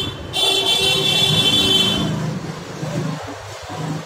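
A steady, high-pitched horn-like tone that stops about two seconds in, followed by a lower hum that comes and goes.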